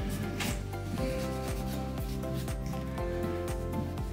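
A grooming chalk block rubbed into the wiry muzzle hair of a wire fox terrier, a run of short scratchy strokes, over soft background music.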